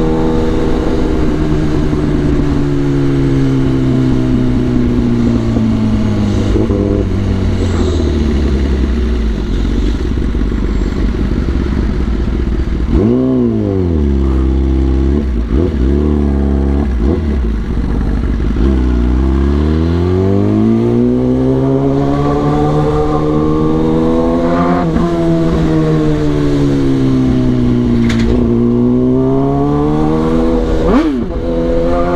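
Kawasaki ZX-10R's inline-four engine on the move: the revs fall slowly and settle low, a quick throttle blip comes about halfway through, then the engine climbs through the revs, dips, and climbs again in the last third.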